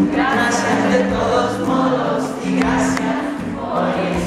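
Concert audience singing along in chorus, many voices together, over the band's accompaniment.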